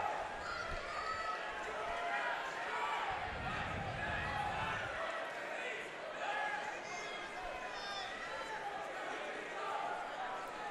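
Arena ambience of indistinct shouting from the crowd and cornermen during a cage-side clinch. A low rumble runs for about two seconds around the middle.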